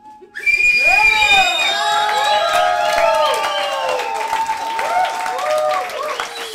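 Audience breaking into loud cheers, whoops and shouts about half a second in, with a high whistle in the first second or so, as a song ends.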